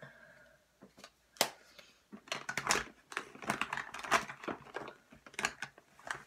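Makeup compacts and brushes being handled: an irregular run of quick plastic clicks and taps, getting busier about two seconds in.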